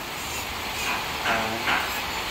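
Handheld rotary carving tool running against wood with a steady hiss as it grinds carving detail.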